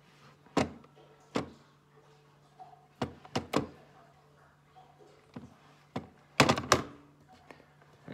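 Keys of an old plastic desk telephone being pressed and its handset handled: a series of sharp, irregular clicks and clacks, with the loudest cluster about six and a half seconds in, over a low steady hum.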